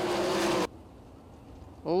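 Sprint car engines and track noise running loud and steady, cut off abruptly by an edit about two-thirds of a second in, leaving only a faint hum. A man's voice over a public-address system begins near the end.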